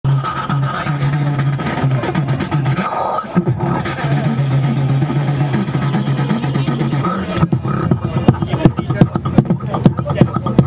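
Beatboxer performing into a handheld microphone: a long held low bass tone with a high whistle-like tone over it, broken briefly about three seconds in, then from about seven seconds in a fast run of sharp percussive kick and snare sounds.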